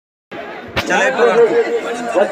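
A group of men talking over one another, after a brief gap of dead silence at the start; a single sharp click just under a second in.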